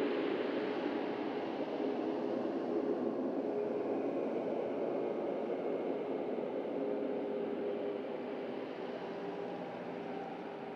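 Arena maintenance vehicles running steadily: a tractor engine and the hiss of water spraying from a water truck onto the sand footing, with a faint steady hum, easing slightly near the end.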